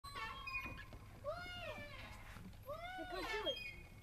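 A young girl's high-pitched voice: two drawn-out calls that rise and fall in pitch, with no clear words, the second one broken into several short parts.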